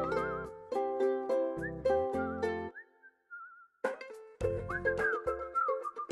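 Upbeat background music: a whistled melody with vibrato over evenly beaten plucked-string chords. About three seconds in the accompaniment drops out for a second, leaving only a faint whistle, then it comes back in.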